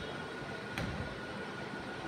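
Steady city background noise with a faint thin steady tone running through it, and one brief click about three quarters of a second in.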